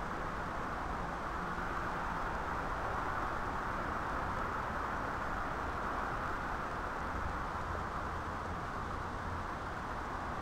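Steady outdoor background noise: an even rushing hiss with a low rumble underneath, swelling slightly in the middle, with no distinct events.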